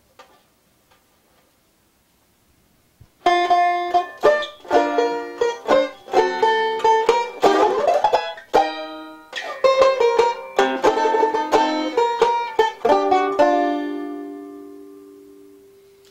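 Four-string jazz banjo played with a pick: a short passage of picked chords and notes starts about three seconds in, after silence. It has a fast tremolo strum in the middle and ends on a chord left ringing until it fades away.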